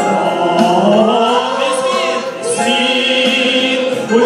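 A worship song: several voices singing together into microphones over a Yamaha electronic keyboard accompaniment, with long held notes.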